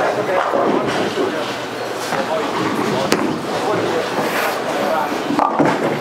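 Bowling alley din: a bowling ball rolling out and striking the pins, over the steady clatter and chatter of other lanes, with one sharp click about three seconds in.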